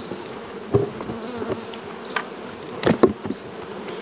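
Honey bees buzzing steadily around open hives, with a few sharp knocks from the wooden hive boxes and covers being handled, the loudest pair about three seconds in.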